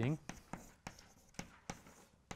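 Chalk writing on a blackboard: about five short, sharp taps and strokes of the chalk against the board, spaced irregularly.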